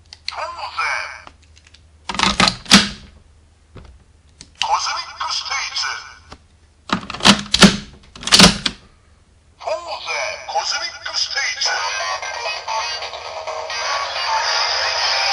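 Kamen Rider W Double Driver toy belt in use: short recorded-voice announcements from Gaia Memory toys, sharp plastic clicks as the memories are slotted in and the driver is flipped open, then from about ten seconds in the belt's electronic transformation music playing.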